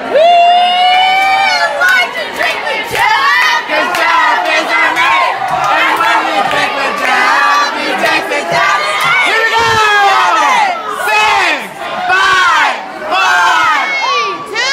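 A crowd shouting and cheering loudly, many high-pitched voices yelling over one another, cheering on players in a flip cup drinking race.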